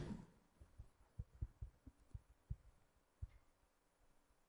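Faint, soft low thumps, about eight of them at uneven intervals over two and a half seconds, from a stylus tapping and stroking on a tablet screen while figures are handwritten.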